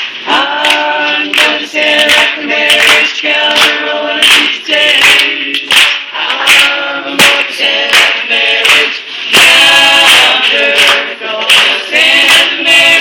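A group of protesters singing a protest song together without instruments, with hand claps keeping a steady beat, about two to three claps a second.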